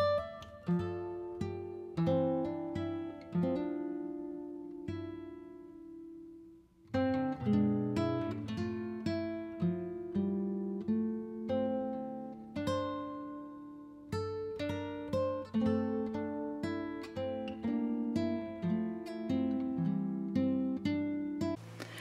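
Background music of a solo acoustic guitar playing a run of plucked notes, with a short break about a third of the way through before the playing resumes.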